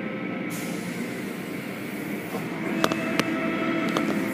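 Automatic tunnel car wash running: a steady hum of machinery, with a high hiss of water spray starting about half a second in. A few sharp knocks come near the end.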